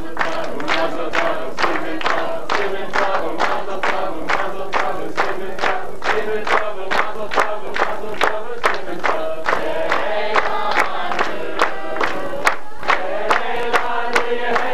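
A group of people singing together while clapping along in a steady rhythm, about three claps a second.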